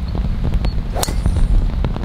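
A golf driver striking a ball off the tee: one sharp crack about halfway through, over a steady low rumble of wind on the microphone.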